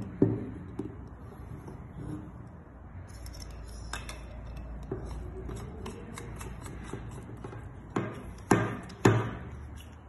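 Hard plastic parts of a 16 amp industrial plug being handled and screwed together as the rear cap with its waterproofing grommet goes onto the plug body: soft rubbing and small knocks, a sharp click about four seconds in, and three louder clicks near the end.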